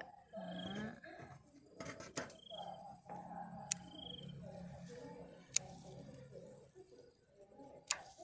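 Scissors snipping water spinach stems: about five sharp snips, two in quick succession about two seconds in, then one every two seconds or so.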